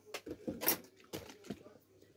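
Quiet handling noises: a few light clicks and taps, with a brief crinkly rustle about two-thirds of a second in, as hands move between the sandal and a clear plastic bottle.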